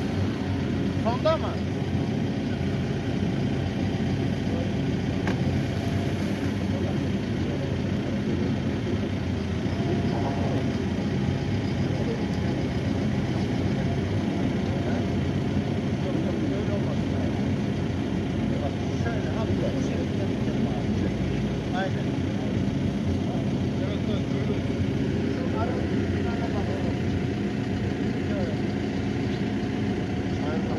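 Excavator's diesel engine running steadily, with people talking in the background.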